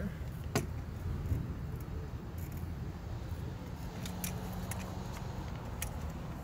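Handling noise from a phone carried while walking: a steady low rumble with a few short sharp clicks, roughly one every couple of seconds.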